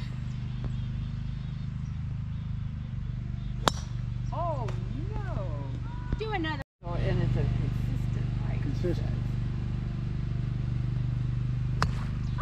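A golf driver striking a teed ball: one sharp crack about three and a half seconds in, and a second tee shot just before the end, over a steady low hum.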